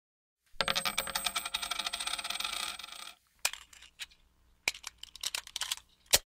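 Logo intro sound effect: a fast, dense rattle of small metallic clicks and jingles for about two and a half seconds, starting about half a second in. A handful of scattered single clicks follows.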